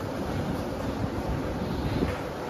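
Steady rushing noise, like moving air buffeting the microphone, with no distinct punch impacts standing out.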